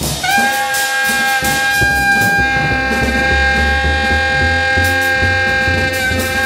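Saxophone holding one long, high, steady note that begins just after the start with a slight scoop up into pitch, over double bass and drums playing free jazz underneath.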